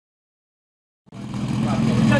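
Silence for about the first second, then a small engine running steadily at idle, typical of the portable fire pump that stands ready at the start of a firefighting-sport attack run, with voices over it.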